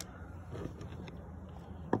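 Quiet background noise with a few faint small clicks.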